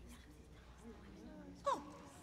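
A person whimpering faintly in distress, with a short, louder sob that falls steeply in pitch near the end.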